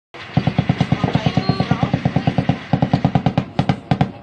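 Rapid automatic gunfire, about eight shots a second in a long burst, with a short break about two and a half seconds in and a few last shots near the end.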